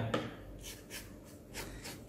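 Small plastic brush scrubbing the fabric face of a disposable 3M 9501 respirator mask with detergent water: a series of short, quick scratchy rubbing strokes, fairly faint.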